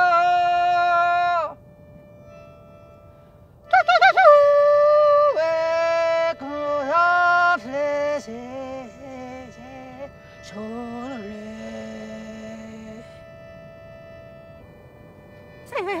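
Wordless singing in long held notes with quick slides and breaks in pitch, in the manner of yodelling, over a small button accordion. It stops for about two seconds near the start and thins to a faint held note for the last few seconds.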